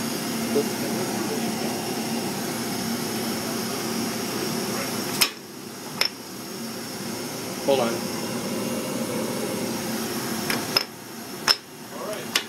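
Sharp metallic clicks as fingers work the metal ring and insert at the opening of a microwave reactor's sample cavity: two about five and six seconds in, then several close together near the end. A steady machine hum runs underneath.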